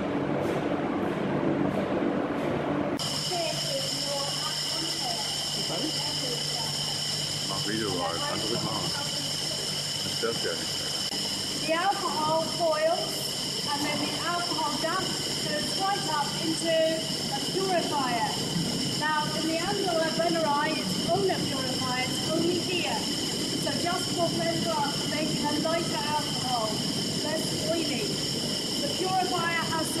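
Steady hum of distillery machinery, changing sharply about three seconds in to a steady high-pitched whine and hiss of still-house plant. A woman's voice talks indistinctly beneath it.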